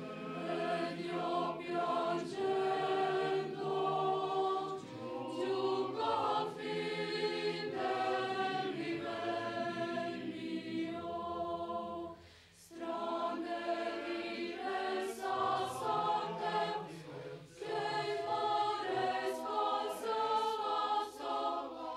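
Mixed choir of men's and women's voices singing in sustained phrases, with a brief break between phrases about twelve seconds in.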